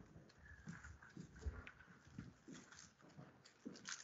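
Near silence broken by faint, irregular knocks and taps.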